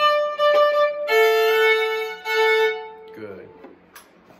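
Solo fiddle playing a short phrase: a higher note for about a second, then a lower note held over two bow strokes that fades out about three seconds in. A brief voice follows near the end.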